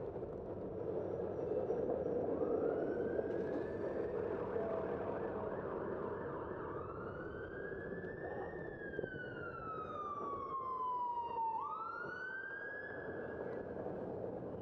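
Ambulance siren wailing in slow sweeps: it rises a couple of seconds in and again about halfway, falls slowly, then rises quickly near the end, over steady city traffic noise.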